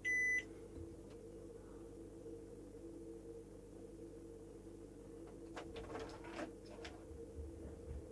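A short single electronic beep from a digital multimeter right at the start. Then faint clicks from the probes and the mains plug being handled, over a steady low background hum.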